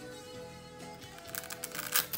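Faint background music with steady held notes; from a little past halfway, short scraping and crackling clicks as the cloth grille frame is pried off a KLH Model Five loudspeaker cabinet, loudest near the end.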